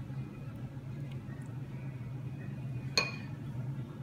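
A metal spoon clinks once, sharply and with a brief ring, about three seconds in, while sauce is being spread on dough. A steady low hum runs underneath.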